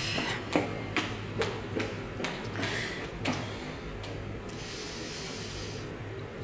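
Footsteps on a hard floor, sharp steps about two a second, as someone walks briskly past and away, fading out after about three seconds. Near the end a soft, drawn-out breath out.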